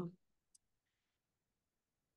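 Near silence in a pause between spoken words, broken by one faint tiny click about half a second in.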